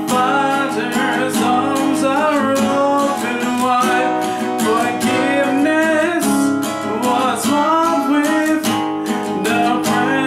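Steel-string acoustic guitar strummed in a steady rhythm, open chords in B major without a capo, cycling B major, C-sharp minor, G-sharp minor and E major, with a man's voice singing along.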